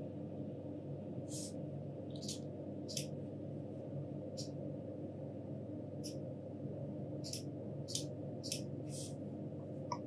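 About ten faint, scattered computer mouse clicks over a steady low hum of room and microphone noise.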